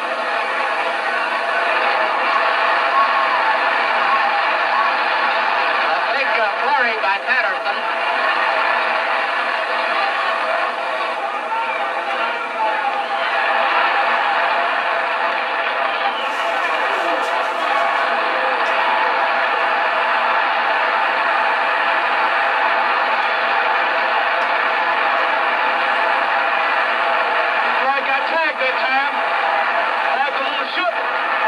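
Steady, unbroken crowd noise from an old boxing broadcast, with faint voices surfacing now and then.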